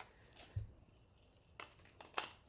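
Faint handling sounds in a quiet room: a soft low thump about half a second in and a light click later on, with no hair tool running.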